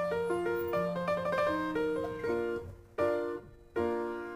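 Piano music: a melody over chords, then a chord struck about three seconds in and another near the end, each left to die away.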